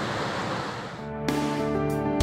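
Mountain stream rushing. About a second in, background music with held notes comes in over it.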